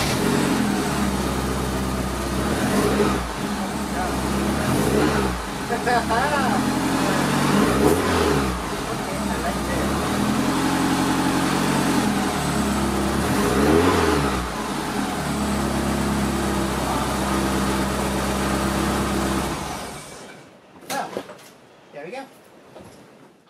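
1983 Porsche 944's 2.5-litre four-cylinder engine idling after a start, revved up and down in a series of short throttle blips to test the new shorter throttle cam, then switched off about two seconds before the end.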